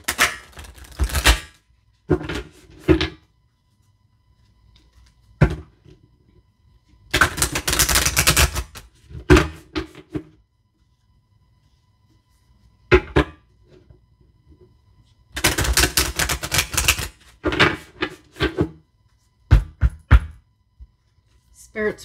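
A deck of tarot cards being shuffled by hand. There are three stretches of rapid riffling crackle several seconds apart, with single sharp taps of the deck on the table between them.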